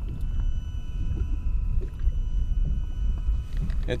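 Steady low rumble of wind and water around a small boat drifting on open water, with a few faint steady whining tones above it.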